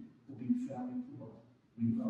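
Speech: a person talking in short phrases, with a brief pause near the end.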